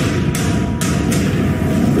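Film trailer soundtrack played back: a loud sound-effect hit at the very start, then a dense action wash of noise and music, with sharp hits about a third of a second and nearly a second in.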